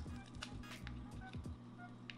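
Quiet background music, with a few faint crinkles and clicks from a foil reagent packet being bent open by hand.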